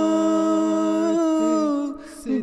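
A cappella vocal humming in an Urdu nazm: voices hold one long, steady note that fades away just before the end.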